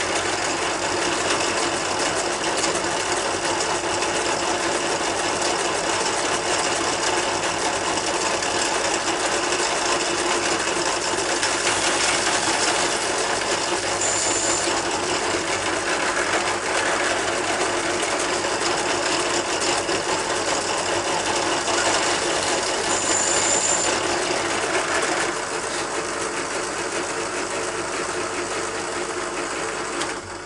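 Benchtop drill press motor running steadily while drilling holes through a plastic cassette tape shell, with two brief high-pitched squeals partway through. The sound eases slightly near the end.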